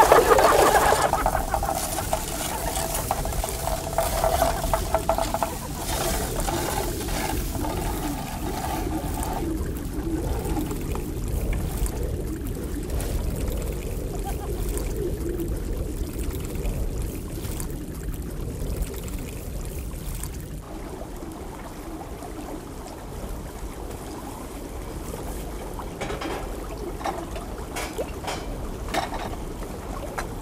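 Water running and trickling steadily in a shallow stone channel. A held tone sounds over it for about the first nine seconds.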